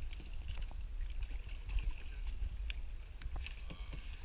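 Kayaks on calm river water: light paddle splashes and scattered water drips, over a steady low rumble on the microphone.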